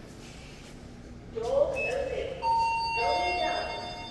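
Toshiba lift's arrival signal: a recorded voice announcement from about a second in, overlaid by an electronic chime of two held tones, a higher one and then a lower one about half a second later that rings on past the end.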